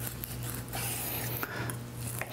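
Kitchen knife slicing raw chicken breast into strips on a wooden cutting board: irregular soft scraping and squishing strokes, over a steady low hum.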